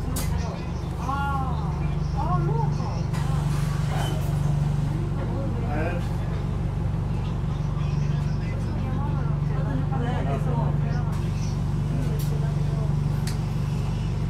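Inside an Alexander Dennis Enviro400H MMC hybrid double-decker bus on the move: a steady low drivetrain hum fills the cabin, with indistinct passenger voices over it.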